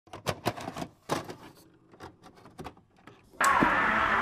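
A run of irregular mechanical clicks and clunks from a VHS deck's tape mechanism. About three and a half seconds in, the song cuts in suddenly with strummed acoustic guitar.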